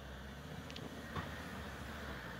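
Faint, steady low rumble of a Ford Everest's engine as it climbs a steep rocky slope under load, with a couple of faint clicks about a second in.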